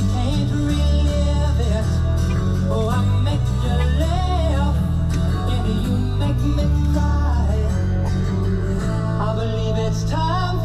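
Car radio playing a song from a 1970s rock station: a singing voice over guitar and a strong, steady bass, heard inside the car.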